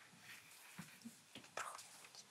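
Near silence with a few soft footsteps on a hard floor, the clearest about one and a half seconds in, and faint whispering in the background.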